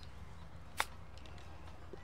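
Golf club striking the ball on a short chip shot, one sharp click a little under a second in, over a low steady rumble of wind on the microphone.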